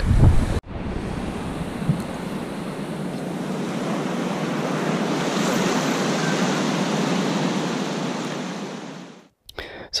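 Steady rush of flowing water below a dam, swelling slightly through the middle and fading out near the end.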